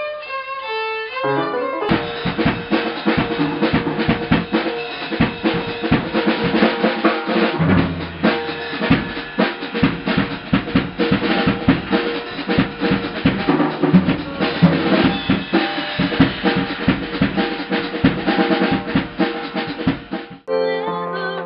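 A violin plays a short melodic line, then about two seconds in it cuts to a drum kit played in a busy, driving rhythm with kick drum, snare and cymbals.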